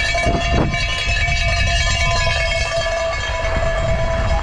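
Mountain bike rolling fast down a loose gravel track: a steady low rumble of tyres over stones and wind on the action-camera microphone, with a steady high whine from the bike held over it.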